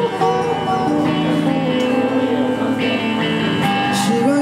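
A live rock band playing the instrumental intro of a song: an electric guitar melody over guitar chords, bass and drums. A cymbal crash near the end.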